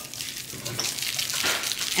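Seasoning shaken from a spice shaker onto raw burger patties: a soft, steady hiss of falling grains with a few light ticks.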